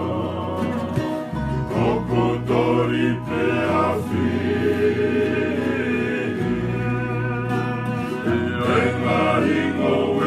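Group of men singing a Tongan kalapu (kava-club) song in close harmony, holding long notes, accompanied by strummed acoustic guitar and ukulele with a bass guitar underneath.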